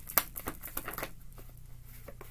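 A deck of tarot cards being shuffled by hand: a quiet run of short card clicks and flicks that thins out in the second half.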